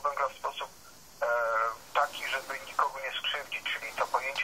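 A person talking, sounding thin and tinny with no bass, with a brief pause and then one long drawn-out syllable a little over a second in.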